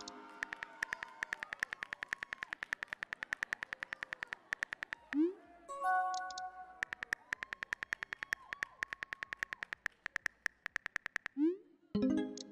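Smartphone keyboard click sound effects tapping out a text message, a rapid, even run of about eight taps a second. About five seconds in, a rising whoosh and a short chime mark a message being sent and answered; the tapping then resumes and another whoosh comes near the end.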